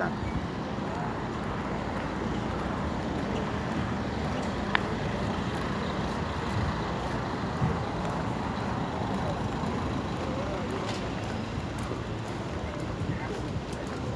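Steady city street traffic noise, with a single sharp click about five seconds in.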